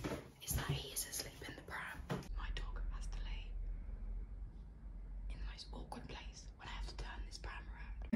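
A woman whispering, with a low rumble of handling noise on a phone's microphone through the middle as it is moved about.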